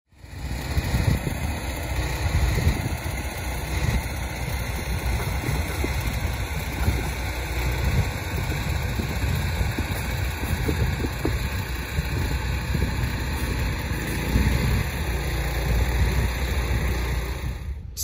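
Wind rumbling and buffeting on the microphone outdoors: a loud, steady rushing noise with gusty low-end surges.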